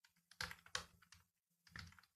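Faint computer keyboard typing: a quick run of keystrokes about half a second in, and a few more just before the end.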